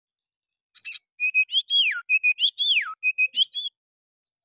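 Oriental magpie-robin (kacer) song in its bulbul-imitating (kutilang) style. A rough, high first phrase about three-quarters of a second in is followed by a run of clear whistled notes, with two long falling glides. It stops shortly before the end.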